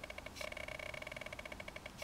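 Microsoft Arc Touch Mouse's touch scroll strip ticking rapidly and evenly as a thumb strokes it to scroll: the strip's audible click feedback, which is called a downside and annoying in quiet places.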